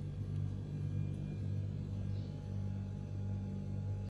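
Steady low electrical hum with no change in pitch or level.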